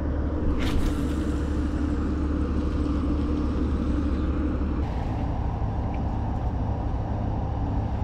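Steady low droning rumble with a constant hum, the engine noise of a large tanker ship passing on the river. A single short click about a second in.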